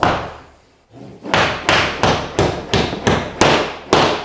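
Lather's hatchet (drywall hammer) hammering a drywall nail into drywall near an inside corner with its rounded striking face: one blow, then a quick run of about ten blows from about a second in, each with a short ringing tail.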